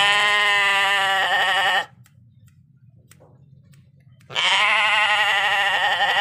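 Sheep bleating twice: a long, wavering bleat at the start and another beginning about four seconds in.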